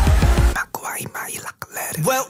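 K-pop song whose heavy bass beat cuts out about half a second in, leaving a short, sparse break carrying a whispered vocal line.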